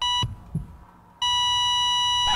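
Two censor bleeps, each a steady electronic tone: a short one at the start and a longer one of about a second from past the middle, covering swear words.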